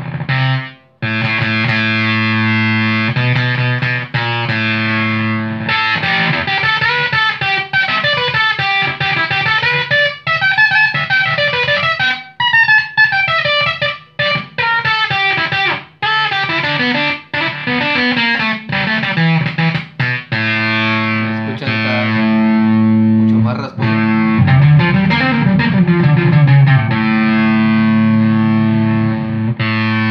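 Electric guitar played through a Woolly Mammoth-style germanium-transistor fuzz pedal, giving thick, distorted sustained notes and chords. It drops out briefly about a second in, and there are sliding, bent notes in the middle and near the end. The fuzz is set to sound more 'velcro'-like.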